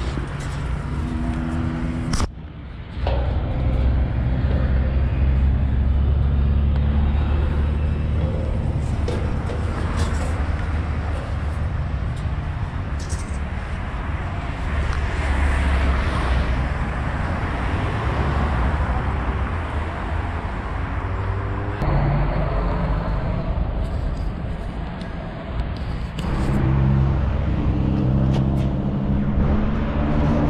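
Road traffic: cars passing on the road below, their tyre and engine noise swelling and fading over a steady low rumble, loudest near the middle.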